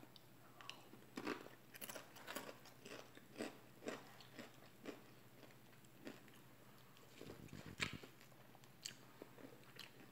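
Close-up mouth sounds of biting and chewing sauce-dipped fried food: faint, irregular soft crunches and wet smacks, with one louder crunch near the end.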